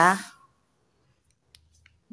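A few faint, short clicks from hands handling craft materials: cut paper squares and a polystyrene foam disc on a wooden floor.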